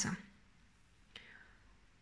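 Low room tone with one faint short click about a second in.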